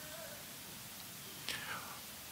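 A pause in speech: faint room hiss, with a short breath-like voice sound about one and a half seconds in.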